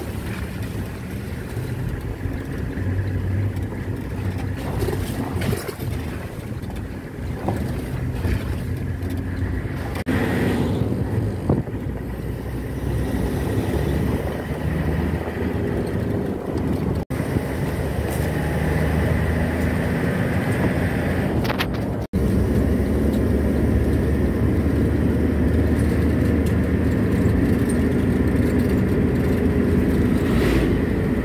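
Engine and road noise of a moving ambulance, heard from inside the cab: a steady low rumble that cuts out for an instant twice, a little louder after the second break.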